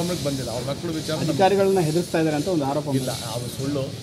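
A man speaking in a steady run of statements into news microphones, over a faint steady hiss.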